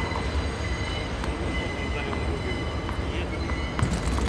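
Tennis balls struck by rackets and bouncing on a hard court during a rally: a few sharp pops, the loudest near the end, over a steady low rumble.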